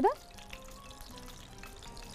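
Faint steady sizzle of spring rolls frying in oil, under soft background music.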